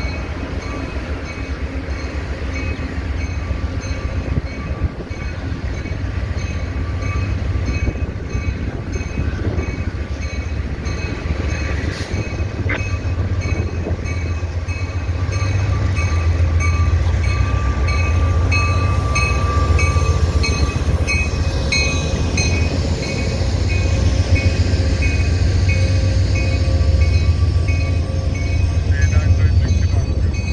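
Amtrak GE Genesis diesel locomotive pulling in and passing close by with its train, its bell ringing in a steady, even rhythm over a low engine and rail rumble. The rumble grows louder as the locomotive and then the passenger cars roll past.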